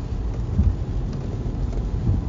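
A steady low rumble with a faint hiss over it.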